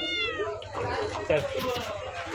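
A single short, high-pitched cry that falls in pitch, right at the start.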